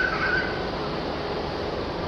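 Steady background noise of a busy railway station platform, with a brief faint wavering high tone right at the start.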